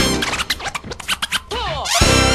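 Music with DJ turntable scratching: a quick run of short scratches, then a few longer scratch sweeps rising and falling in pitch near the end.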